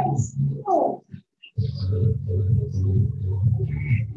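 A man's voice calling out in short shouts with falling pitch, then, after a brief gap, a dense, steady low rumbling sound fills the rest.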